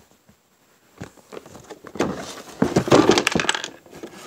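Close handling noise: a dense run of rustling, clicks and knocks as objects are moved about near the microphone, loudest from about two seconds in until near the end, after a near-quiet first second.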